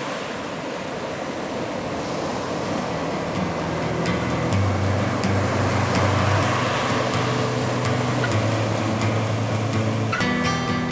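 Ocean surf washing over rocks, a steady rushing hiss that grows slowly louder. About four seconds in, a low sustained note swells in beneath it, with faint ticks above, as music begins to fade in.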